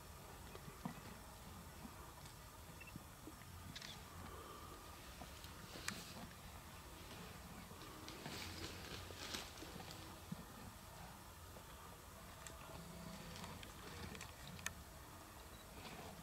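Lioness feeding on a buffalo carcass: faint scattered crunching and tearing with a few sharp clicks, busiest about halfway through, over a faint low rumble.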